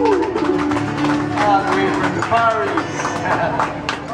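Closing moments of a Hawaiian song played on acoustic guitars and 'ukulele: a last note held steady, ending about two seconds in, then people talking over the end of the song.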